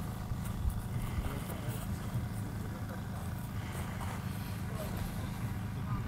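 Wind on the microphone: a steady low rumble, with faint voices in the background.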